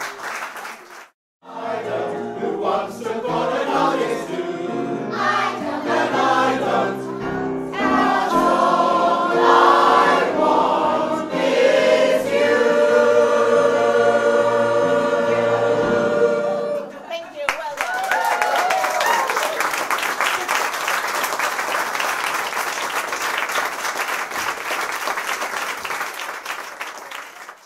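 A mixed choir of men's and women's voices singing, ending on a long held chord, followed by audience applause with a cheer.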